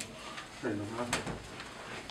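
A door latch clicking once, a single sharp click about a second in, amid a few quiet words.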